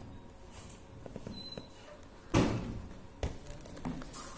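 Hard plastic retail packaging of an action camera being handled: light rustling and small clicks, then a loud clack a little over two seconds in and a sharper click about a second later as the camera is worked free of its plastic mount.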